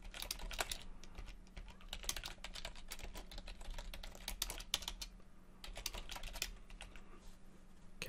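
Typing on a computer keyboard: runs of quick, irregular keystrokes with short pauses between them. A faint, steady low hum runs underneath.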